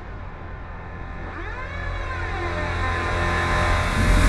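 Synthesized riser sound effect swelling steadily louder, with sweeping pitch glides over a low rumble, building up to a logo intro.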